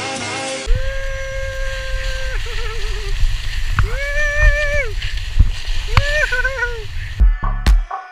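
Three long whooping cries from a skier, each held then wavering at its end, over a heavy rumble of wind and skis in powder snow on a helmet-camera microphone. Music plays at the very start, and an electronic beat with a heavy kick drum comes in near the end.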